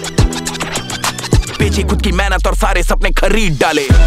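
Hip hop track with DJ turntable scratching: quick back-and-forth pitch sweeps over a heavy bass that comes in about one and a half seconds in. The music breaks off for an instant just before the end, and a rapped "challenge" follows.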